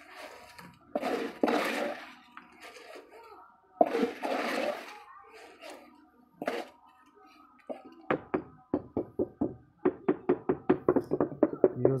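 Trowel scooping gritty cement-and-gravel mix into a plastic tuff tile mould in a few scraping bursts. From about eight seconds in, a quick run of knocks on the filled mould speeds up to about five or six a second, as the concrete is settled in the mould.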